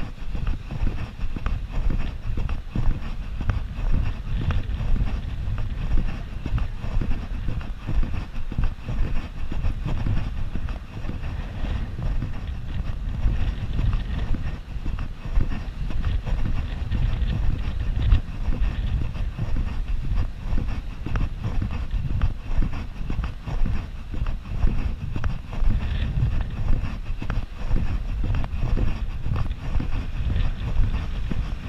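Wind buffeting an action camera's microphone on an exposed coast: a low, irregular rumble that rises and falls with the gusts.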